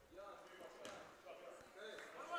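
Quiet gymnasium ambience: faint distant voices and one faint thump a little under a second in.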